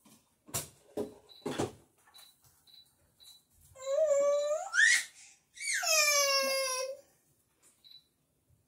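A domestic cat meowing twice in long calls, the first rising in pitch and the second starting high and falling away. Three short knocks come in the first two seconds.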